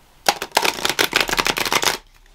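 A deck of tarot cards being shuffled in the hands: a quick, dense flutter of card clicks that starts about a quarter second in and lasts about a second and a half.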